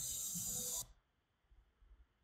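Steady hiss of background noise in a played-back clinic recording, cutting off abruptly a little under a second in, leaving near silence.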